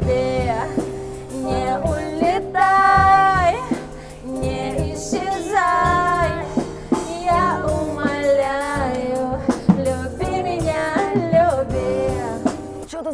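Live street band: a woman singing into a microphone, backed by acoustic guitar and a drum kit.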